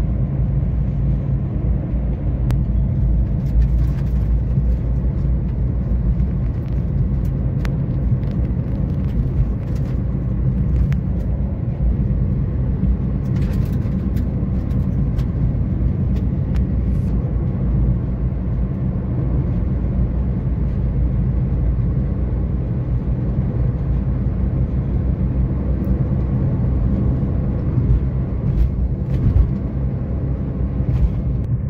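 Car driving steadily, with continuous low road and engine rumble heard from inside the cabin.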